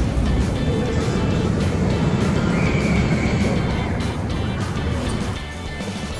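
A steel roller coaster train running past on its track, a loud low rumble that eases off about four seconds in, with background music underneath.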